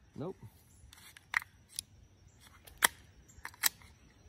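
A few sharp metallic clicks, the loudest near the three-second mark, from the action of a KelTec CP-33 .22 pistol being worked by hand to clear a stoppage. The gun is running dirty.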